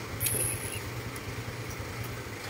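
A steady low hum, with a brief soft hiss about a quarter second in.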